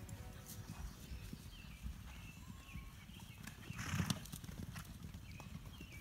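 Faint, irregular hoofbeats of a loose herd of horses galloping across a grass pasture, with a louder noisy swell about four seconds in.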